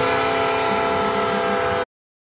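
Hockey arena's end-of-game horn sounding one steady, held chord over crowd noise, cut off suddenly near the end.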